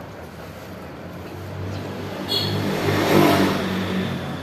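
A motor vehicle's engine passing by, its hum and road noise growing louder to a peak about three seconds in, then easing off.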